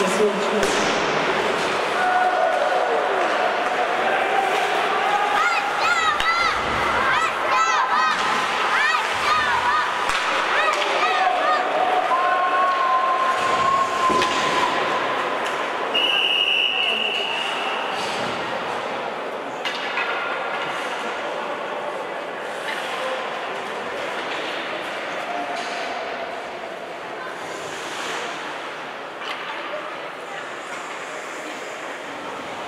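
Ice hockey play in a rink: sticks and the puck clack and thud against the boards while voices shout. A single steady referee's whistle blast sounds a little over halfway through, stopping play.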